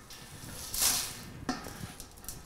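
Dry spices and toasted oak chips sliding off a plastic cutting board into a stainless steel stockpot: a short scraping rush about a second in, then a single light tap.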